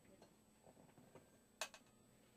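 Near silence with a few faint small clicks and one sharper click about one and a half seconds in.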